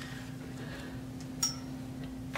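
Quiet room tone with a steady low hum, and one short, light click about one and a half seconds in.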